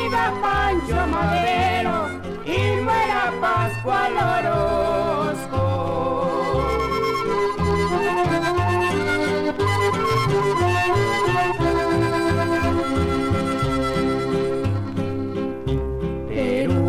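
Mexican corrido playing from a vinyl LP: an instrumental stretch between sung verses, a wavering melody line over a bass that steps steadily between notes on the beat.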